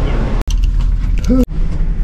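Low steady rumble of a ferry's interior machinery and ventilation, cut off abruptly twice by edits, with a short burst of a person's voice just before the second cut.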